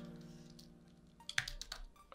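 Computer keyboard typing: a few quick keystrokes in the second half. Before the keystrokes, a held low tone fades out over about a second.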